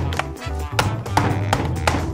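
Background music with a steady bass beat, with a few knocks of a plastic DVD case against a tabletop.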